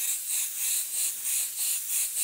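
Iwata HP-CS Eclipse airbrush spraying paint, a high hiss that swells and fades about three times a second as the color is laid down in short passes.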